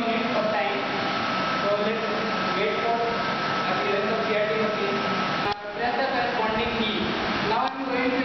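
Indistinct voices talking over a steady whirring hum. A thin steady tone runs beneath them and stops about five and a half seconds in, where the sound briefly drops out.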